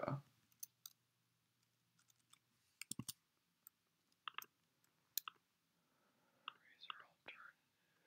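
Near silence broken by scattered faint clicks from a computer keyboard and mouse: single keystrokes spread over several seconds, with a quick run of clicks about three seconds in and a few more near the end.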